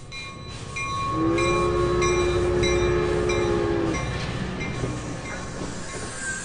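Low rumbling sound effect with a regular clicking rhythm, about three clicks a second, and a chord of horn-like tones held for about three seconds from a second in.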